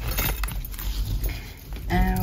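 Handling noise from small jewellery packaging: a clear plastic bag and foil gift pouches rustling, with light metallic clinks from silver earrings.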